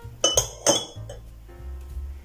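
A metal spoon clinking against glass as it scoops cold water a tablespoon at a time: three sharp clinks within the first second.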